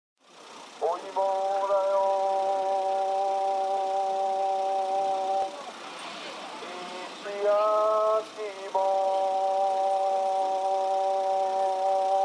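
Intro jingle of two long held notes, each steady for about four seconds, with a shorter, higher wavering note between them.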